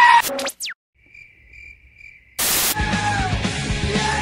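Edited montage audio: a goat's scream cuts off just after the start, followed by falling glides and a quiet stretch with a faint high chirp pulsing three times. A short burst of static-like noise about two and a half seconds in leads into loud live rock music.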